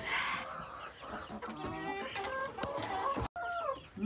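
Domestic hens clucking, a run of short rising and falling calls, with a brief dropout in the sound about three seconds in.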